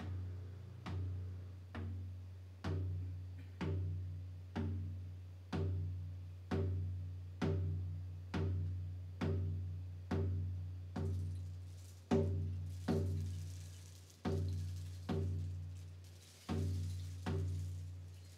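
A low-pitched hand drum beaten in a slow, steady pulse of about one stroke a second, each stroke ringing and fading before the next. A faint high shimmer joins in twice, from about eleven seconds in.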